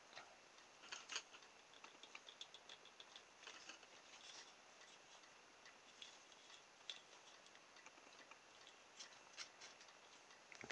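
Faint, scattered small clicks and taps of a plastic bottle-cap wheel and tubing spacers being handled on a wooden skewer axle.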